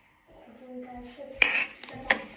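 A sharp, ringing clink of hard objects, like dishes or cutlery, about one and a half seconds in, then a smaller click, over a low held voice or music.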